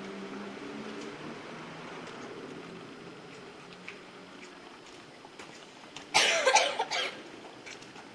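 A person coughing: one loud, harsh cough of just under a second, about six seconds in, over a faint low hum that fades over the first few seconds.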